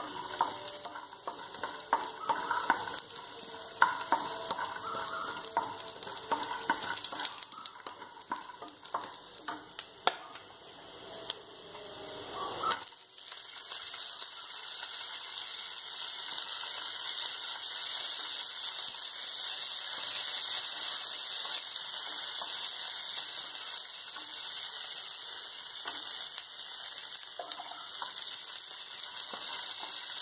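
Cashew nuts frying in ghee in a non-stick pan, stirred with a wooden spatula that clicks and scrapes against the pan. About halfway through, once the raisins are tipped in, the sizzling jumps to a louder, steady hiss.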